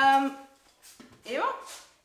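Speech only: a voice holding one steady vowel, then the short word "evo" with rising pitch about a second and a half in.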